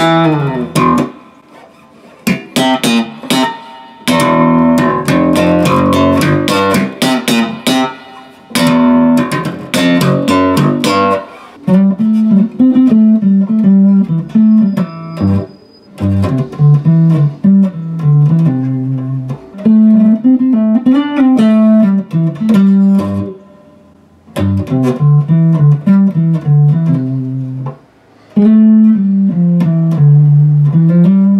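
Fender Jazz Bass being slapped and popped, with sharp, clicky note attacks, to check the action and playability after a setup. About eleven seconds in, the playing changes to rounder fingerstyle notes plucked near the pickups.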